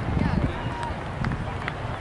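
Indistinct talking of people near the microphone over a low outdoor rumble, with a few faint clicks.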